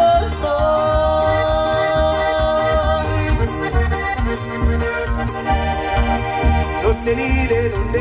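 Live norteño band playing an instrumental passage led by the accordion, whose long held note runs through the first few seconds. Electric bass and twelve-string acoustic guitar play a steady beat beneath it.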